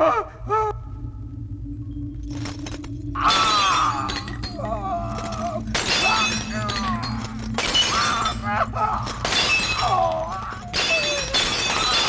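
A man screaming in pain: about five long, harsh cries, starting a few seconds in, over a sustained low musical drone.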